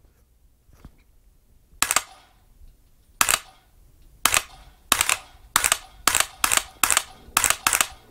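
Dry-fire trigger clicks from an AR-15 fitted with the Mantis Blackbeard auto-reset trigger system, with no live rounds. About ten sharp clicks: the first ones come more than a second apart, then they speed up into a quick string near the end.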